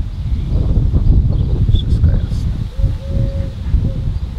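Wind buffeting the microphone in a continuous loud, low rumble. A short steady tone sounds faintly about three seconds in.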